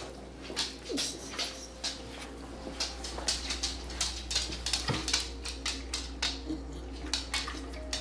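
Irregular rapid clicking of a dog's claws on a hardwood floor as it trots after its food, mixed with light clinks from a metal food bowl being carried. A short falling whimper from the dog comes about a second in.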